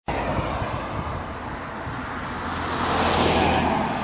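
Road traffic: a car passing close by, its tyre and engine noise building to a peak about three and a half seconds in, then easing.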